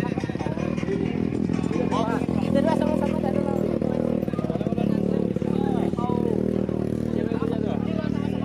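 A motorcycle engine running steadily close by, with people's voices talking over it.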